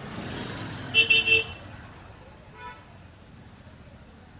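A vehicle horn toots three times in quick succession about a second in, over steady street traffic noise, followed by a fainter, shorter beep a little later.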